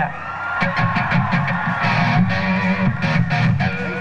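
Electric guitar played through an amplifier between songs: strummed chords that ring on, a new stroke every half second or so.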